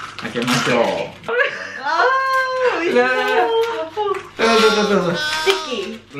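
A person's voice making long, drawn-out sounds rather than words, the pitch held on notes and sliding up and down.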